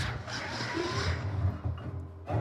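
Strings of a grand piano played inside the case by hand: a noisy scraping and rubbing over a steady low drone, with a short sliding tone a little under a second in.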